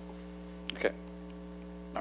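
Steady electrical mains hum on the audio feed, with one brief voice sound just under a second in.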